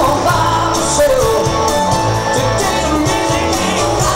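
Live rock band playing: electric guitars, bass and drums, with a singer's voice over them.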